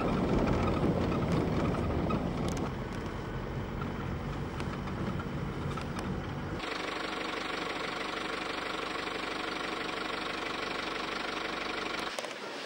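Steady engine and road noise of a moving vehicle, heard from inside. About two-thirds of the way through it changes abruptly: the low rumble drops away and a brighter, hissier hum takes over.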